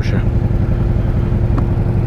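Air-cooled V-twin cruiser motorcycle engine idling steadily at a standstill, a low even rumble with a thin steady tone above it; the engine is running hot, in the rider's own words.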